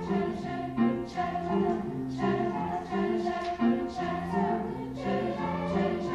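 A youth choir singing in harmony, accompanied on grand piano, with held notes moving through a steady phrase.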